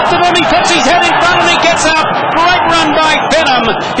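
A race caller's man's voice calling a horse race finish fast and loud, without a break.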